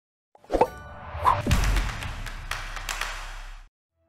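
Cinematic intro sound effects: a sharp hit about half a second in, a falling tone, then another hit about a second and a half in with a low rumble under it that cuts off suddenly just before the end.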